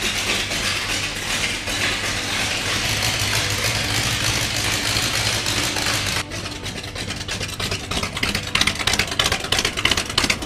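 1927 Ford Model T hot rod's engine idling steadily. About six seconds in the sound cuts abruptly to a closer, choppier run of quick, even firing pulses.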